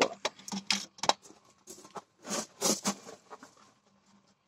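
Irregular light clicks, taps and rustling of handling, busiest about two seconds in.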